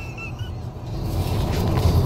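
Low, steady rumble of noise inside a car's cabin, growing louder about a second in.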